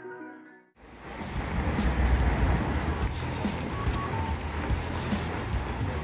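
Background music fades out within the first second. There is then an abrupt cut to outdoor street noise, dominated by a deep rumble of wind buffeting the camera microphone as the camera is carried along.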